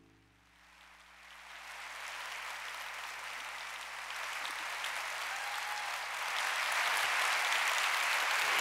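Audience applause, starting faintly about a second in and growing steadily louder.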